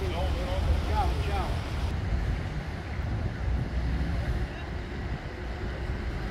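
A few people talking for the first second or two, then a steady low rumble of street traffic.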